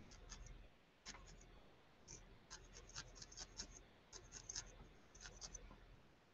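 Faint scratchy pokes of a barbed felting needle stabbing repeatedly into wool, in irregular short runs of several pokes a second.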